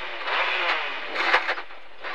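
Ford Escort rally car's engine heard from inside the cabin, accelerating hard away from a standing start on gravel. The revs climb steadily, then drop off briefly near the end as it shifts up.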